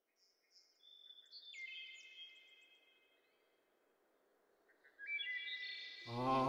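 Faint birdsong: short high chirps, then long whistled notes that step down in pitch, over a soft background hiss, with more whistling just before the end.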